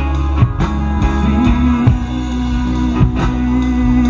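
Live rock band playing an instrumental passage: strummed acoustic and electric guitars, bass guitar and drum kit, with a long held note through the second half.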